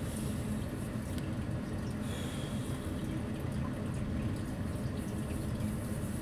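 A steady low rumble with no clear events or rhythm.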